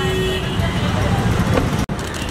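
Street traffic noise: a steady low rumble of cars with voices in the background. It drops out abruptly for an instant near the end.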